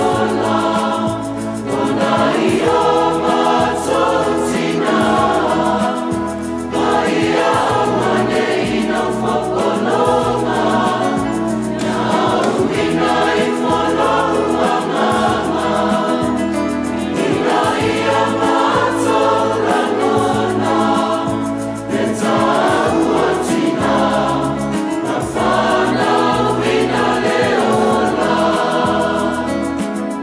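A mixed choir of men's and women's voices singing a Samoan song in harmony, over a steady bass accompaniment.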